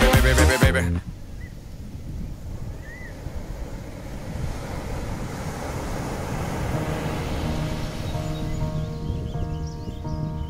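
Dance music cuts off about a second in, leaving a steady low rushing ambience of seaside wind and surf that slowly grows, with two faint short chirps. Soft, held music tones fade in near the end.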